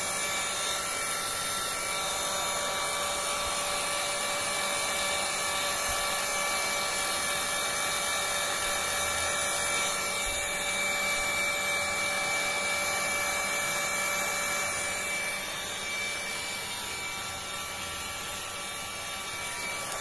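Handheld electric hot air gun running steadily, its fan motor whining over the rush of hot air as it dries freshly screen-printed plastisol ink. It is a little quieter near the end.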